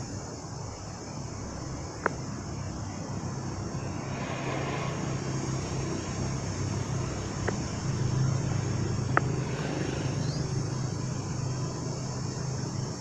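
A steady low drone, swelling a little in the second half, under a continuous high insect buzz, with three sharp clicks.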